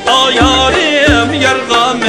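A male voice sings a long, ornamented, wavering line in Uyghur folk style over an ensemble of plucked and bowed strings, with regular frame-drum strokes.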